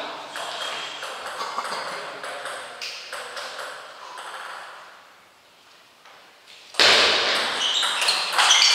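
A table tennis ball clicking sharply against bat and table, a scatter of light ticks over the first few seconds. About seven seconds in, a sudden much louder burst of noise cuts in.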